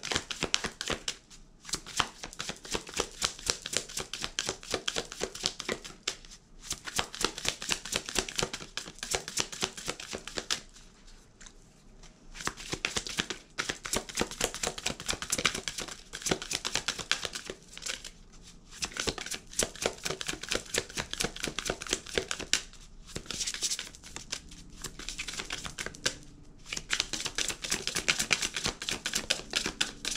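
A deck of oracle cards being hand-shuffled: a rapid, continuous patter of cards slipping against each other, in runs of a few seconds broken by brief pauses.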